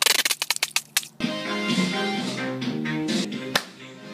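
A plastic ketchup squeeze bottle squirting out in a rapid run of sputtering bursts for about a second. Then background music with plucked guitar, and a single sharp crack near the end.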